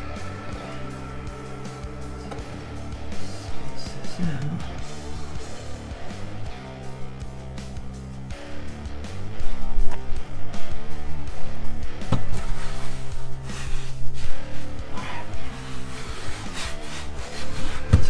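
Background music throughout. From about halfway, rubbing and scraping of a flexible solar panel being laid onto the camper roof and pressed down by hand, with a few light knocks.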